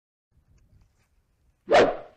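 Near silence, then a single short, loud burst of sound near the end that dies away quickly.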